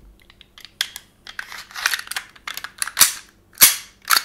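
Slide of a WE Glock 19 gas-blowback airsoft pistol being fitted onto its frame. Small clicks and scraping as it slides along the rails, then two sharp clacks about three and three and a half seconds in. The guide rod is not aligned, so the slide is not seating properly, a common snag on reassembly.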